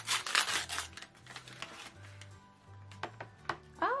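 Packaging crinkling and rustling for about the first second as a toy pack's wrapper is opened, then soft background music with a few light plastic clicks near the end.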